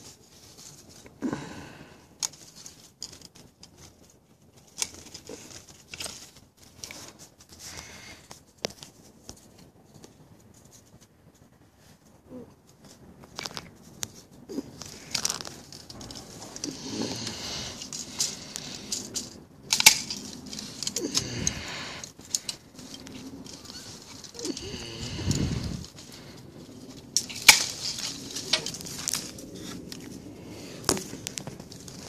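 Hand pruning shears snipping thorns and twigs from a citrus tree, the blades giving sharp clicks scattered throughout, amid rustling and crackling of leaves and branches that grows busier in the second half. A couple of dull low thumps come in the middle and later on.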